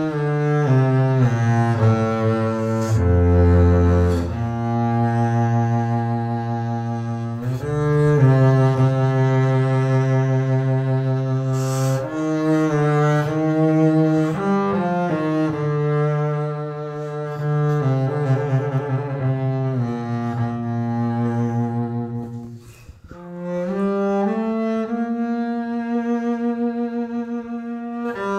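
Solo double bass played with the bow, a slow melody of long sustained notes, some held with vibrato. Near the end the sound briefly drops away before a new held note begins.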